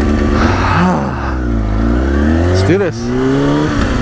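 Sport motorcycle's engine heard while riding: the revs fall about a second in, then climb steadily as the bike pulls away under throttle.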